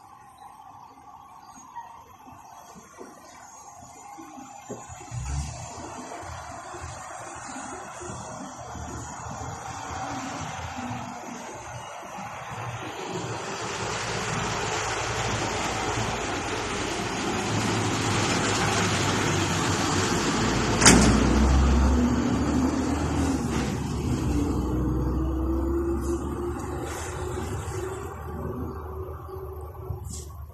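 Street traffic: the engine and road noise of a passing vehicle build up over several seconds, stay loud through the middle and later part, then fade near the end. One sharp click comes about twenty seconds in.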